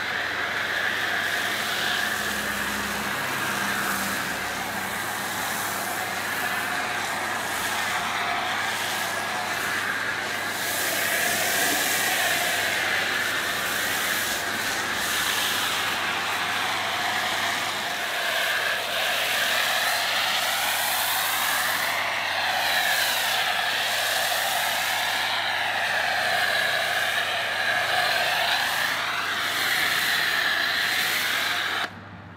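Pressure-washer foam lance spraying snow foam onto a car's bodywork: a steady hissing spray whose pitch wavers up and down as the jet sweeps across the panels.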